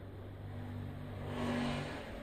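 A low, steady engine hum, with a rush of noise that swells and then fades in the second half, as of a motor vehicle passing.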